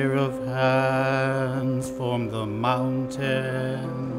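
A man singing solo into a microphone over a steady instrumental backing, holding long notes with vibrato.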